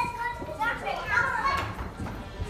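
A group of young children talking and calling out as they play, with footsteps as they hurry along.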